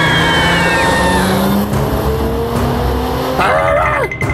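Cartoon bus sound effect: a high squealing whine falls away in the first second, then the engine runs with a slowly rising pitch as it speeds up. Near the end a short wavering vocal-like sound cuts in.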